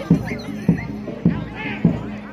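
Live bantengan accompaniment music: a drum struck in a steady beat, a little under two strokes a second, over a held low tone, with voices calling above it.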